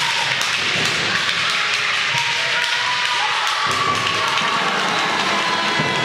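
Steady din of spectators' voices in a sports hall, with repeated thuds and taps from the handball and players' shoes on the court floor during play.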